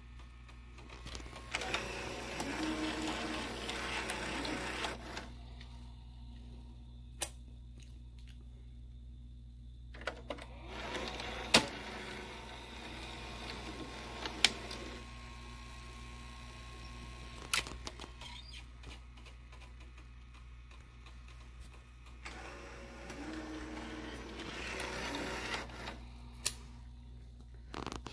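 The tape mechanism of a 1984 JC Penney 5053 VHS VCR running in play with the cover off: a steady low hum from the motors and spinning head drum. Two stretches of louder whirring and squealing come near the start and near the end, with sharp mechanical clicks in between. The squeal is a sign of worn belts or idlers, and the machine is not working right.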